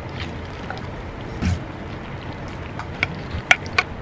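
Utensil clinks and scrapes against ceramic dishware while pasta is stirred and served: a soft thump about a second and a half in, then a few sharp clinks near the end, the loudest about three and a half seconds in. A steady low background rumble runs underneath.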